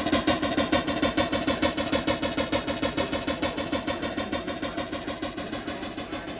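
Breakcore electronic music from a live DJ set: a rapid stuttering loop of one pitched sound repeating about eight times a second, fading gradually.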